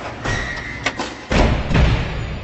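Cinematic logo-intro sound effects over music: a series of heavy low hits and swishes, the two loudest near the second half, with a ringing tail that fades out.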